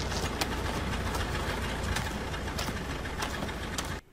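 WWII army jeep's engine idling steadily, a low running hum under a noisy background with a few light clicks.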